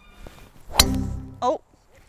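A golf driver striking a ball off the tee: one sharp crack about a second in, the loudest sound here, followed by a short ringing tone.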